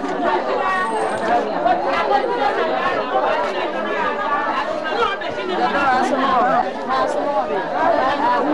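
Many voices talking at once, a steady overlapping chatter of a seated group with no single speaker standing out.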